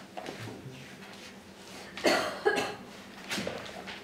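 A person coughing about halfway through, two short bursts close together, over the soft rustle of thin Bible pages being turned.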